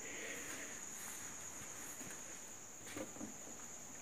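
Quiet room with the steady high-pitched trill of crickets, and a faint soft knock about three seconds in.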